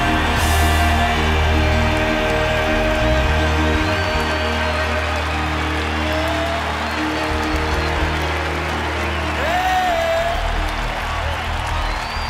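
Live Southern gospel band playing an instrumental break led by piano, with the audience clapping and cheering along.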